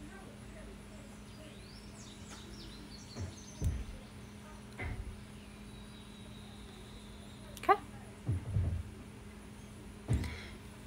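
Quiet background with a steady low hum, a few faint high chirps in the first few seconds, and several dull low thumps spread through.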